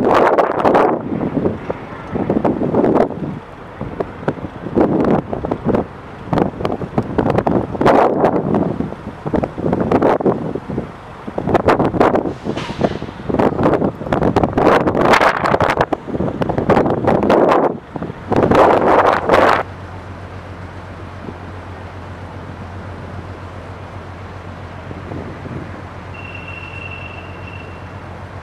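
Wind buffeting the microphone in loud, irregular gusts, which drop away about twenty seconds in and leave a steady low hum. A brief, thin high tone sounds near the end.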